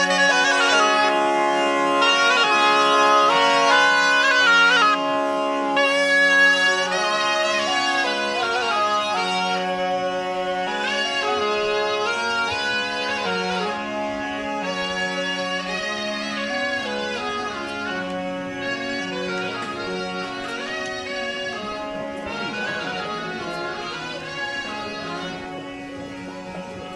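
Ciaramella, a southern Italian folk shawm, playing a melody over a steady bagpipe drone, growing fainter through the second half.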